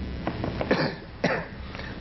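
A person coughing twice, two short coughs about half a second apart.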